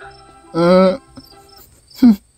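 A voice actor's short held vocal sound, lasting about half a second, with a steady pitch that wavers slightly, heard under a faint steady high-pitched tone.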